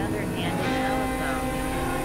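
Experimental synthesizer drone: several steady held tones settle in about half a second in, over a low rumble, with warbling gliding fragments higher up.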